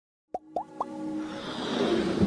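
Animated logo-intro sound effects: three quick rising pops, then a swelling whoosh with held tones that builds toward the end.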